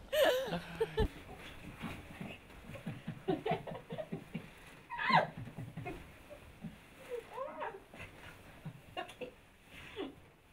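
A small dog making faint, scattered whines and yips.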